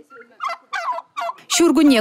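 A flock of domestic turkeys calling: a few short calls in the first second and a half.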